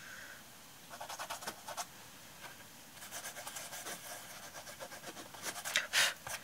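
Quiet, breathy sounds from a person in short irregular bursts, louder near the end.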